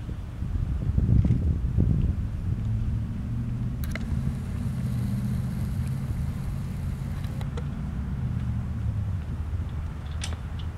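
Boat engine idling with a steady low hum, with wind buffeting the microphone for the first couple of seconds.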